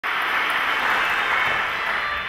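A steady rushing noise with no clear pitch, starting abruptly and holding even.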